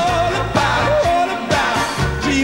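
Live pop band playing with a male lead singer holding wavering sung notes over a steady bass line.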